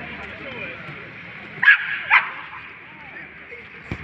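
A dog barking twice, two short barks about half a second apart, over faint background voices. A single sharp knock comes near the end.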